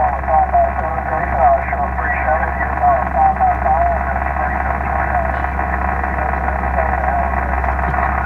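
Single-sideband voice coming in on 20 metres through an Icom IC-7000 transceiver's speaker: a distant ham station's thin, narrow-band voice, replying over steady band hiss.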